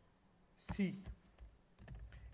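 A few keystrokes on a computer keyboard, short separate clicks about a second after a single spoken letter.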